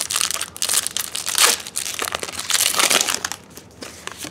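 Foil Pokémon booster pack wrapper crinkling as it is torn open and the cards are pulled out: a run of quick, irregular crinkles that die down near the end.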